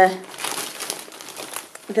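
Thin plastic postal mailing bag crinkling and rustling in irregular crackles as hands rip it and pull it open.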